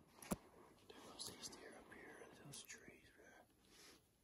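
Faint whispered speech, with one sharp click about a third of a second in.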